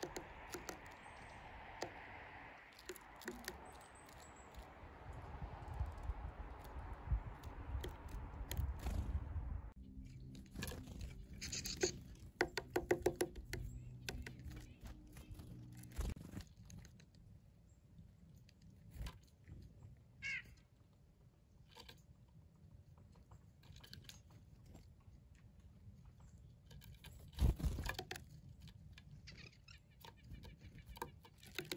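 Black-capped chickadees and a tufted titmouse pecking at a seed cake on a plywood board: faint scattered taps and crunches, with one short bird call about twenty seconds in and a louder thump near the end. A low hiss runs under the first ten seconds or so.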